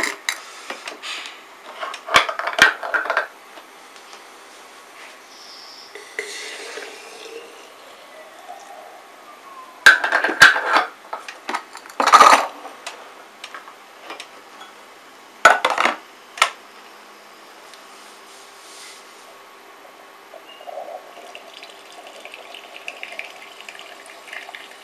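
Metal and plastic clinks and knocks as a small espresso machine's filter holder is taken off, handled and locked back in, and a glass jug is set under the spout. The clatter comes in short clusters, loudest about halfway through, and a faint rough noise starts near the end.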